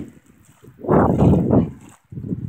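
A gust of wind buffeting the phone's microphone: a rush of noise that swells about a second in and dies away just before the end.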